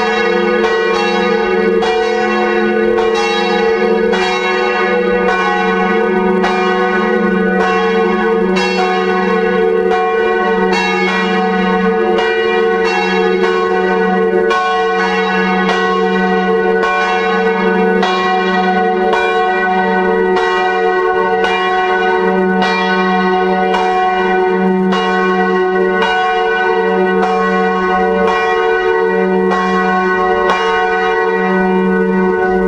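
Full peal of three swinging church bells heard close up in the belfry: two early-14th-century bells tuned to F-sharp and G-sharp and a 1958 F.W. Schilling bell on B. Their clappers strike again and again in overlapping strokes about once a second, and the hum of the bells rings on continuously between strikes.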